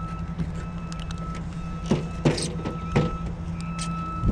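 Tesla Supercharger cable unplugged from the car's charge port and hung back on the charger post: a few sharp clicks and knocks of the connector and cable, over a steady low hum.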